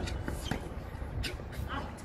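A tennis ball is struck by a racket on a hard court about half a second in, followed by a few fainter, shorter court sounds. A steady low background rumble runs underneath.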